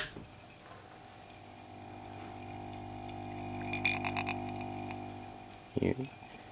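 A tin can humming, resonated at 50 Hz by a homemade inductor, ferrite core and magnet actuator (a 'sound bug') run from a 6 V AC supply. There is a click at the start, then a low steady hum that swells through the middle and fades near the end, with a few faint ticks about four seconds in.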